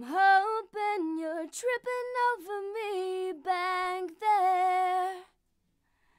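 An unaccompanied female vocal track singing a melodic line in a few phrases of held notes, played through a PreSonus ADL 700 equalizer while one of its EQ knobs is turned. The singing stops about a second before the end.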